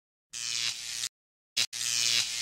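Intro sound effect of buzzing electrical static, cutting in and out: a long burst, a short blip, then another burst, each a hiss over a low electrical hum.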